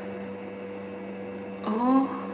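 A steady electrical hum of two fixed pitches, with faint hiss. About a woman's voice makes a short voiced sound near the end.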